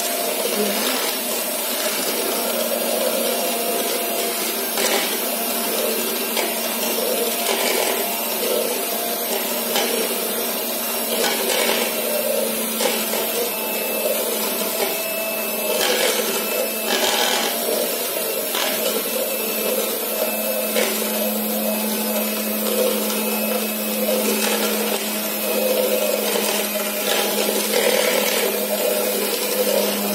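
Electric hand mixer running steadily on its stand bowl, beaters whipping a coffee mixture for dalgona: a continuous motor hum with a few scattered clicks.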